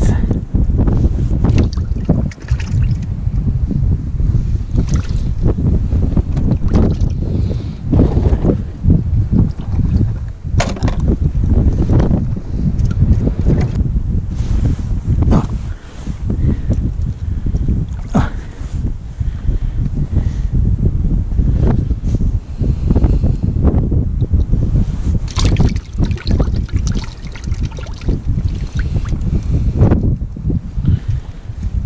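Wind buffeting the microphone outdoors, a loud, steady low rumble, with frequent short rustles and clicks from hands handling fishing line, tackle and a jacket.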